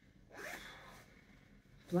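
A woman's short breathy huff, about half a second long.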